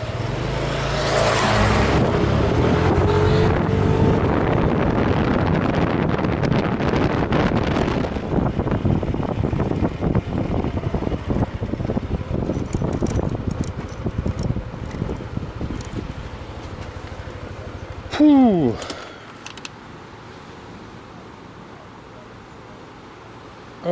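Yamaha NMAX scooter ridden along with wind rushing over the microphone, the wind easing after about eight seconds as it slows. Near the end its single-cylinder engine gives a short, loud rev that falls sharply in pitch as the engine is switched off, leaving a low background hum.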